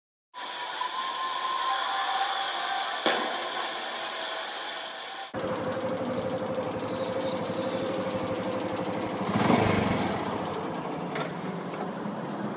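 Suzuki SW-1 motorcycle heard from the rider's seat: first running on the road, then after a sudden cut about five seconds in, its engine idling steadily at standstill, with a short louder rise near ten seconds.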